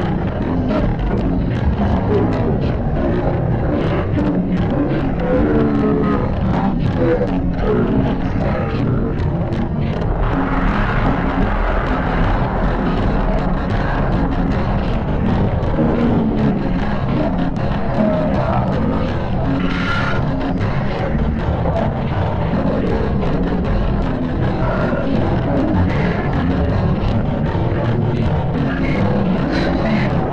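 Loud, dense mix of heavily effects-processed music, running on without a pause.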